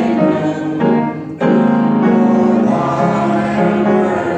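Congregation singing a hymn with piano accompaniment, with a short break between lines about a second and a half in.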